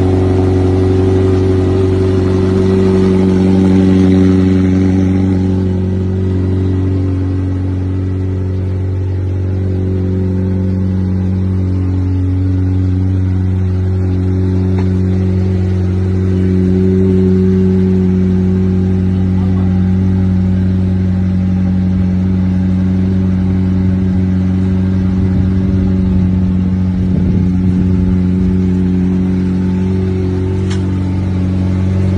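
McLaren 765LT twin-turbo V8 idling steadily just after start-up, a deep, even engine note from the quad exhaust.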